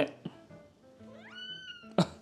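A cat's single meow about a second in, gliding up in pitch, then held and dipping slightly at the end. A sharp click follows right at the end.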